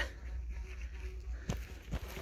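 Gloved hand scraping and rummaging in loose ash and soil, with two sharp clicks about one and a half seconds in and near the end, over a low steady rumble.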